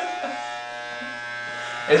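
Electric hair clippers running with a steady buzz, not yet cutting.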